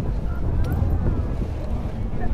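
Wind buffeting the camcorder's microphone, a steady heavy low rumble, with faint voices of onlookers beneath it.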